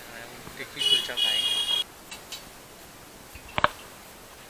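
Busy street-market background with faint voices. About a second in comes a loud, high buzzing beep in two parts, and a single sharp knock near the end.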